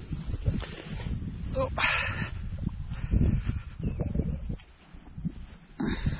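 A dog barks once, briefly, about two seconds in, over a low rumble of wind on the microphone.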